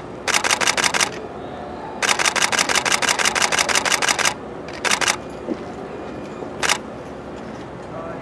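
Camera shutters firing in rapid bursts of continuous shooting, about ten clicks a second: a short burst near the start, a long run of about two seconds in the middle, and two brief bursts later.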